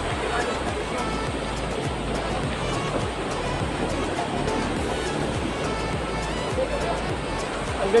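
Steady rush of a small waterfall pouring over a rock ledge into a river pool, with background music underneath.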